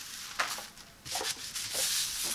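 Mesh rug pad gripper rubbing and brushing against the tabletop and hands as it is spread out and smoothed flat. The strokes are hissy, with a sharp brush about half a second in, a short lull, then steadier rubbing building near the end.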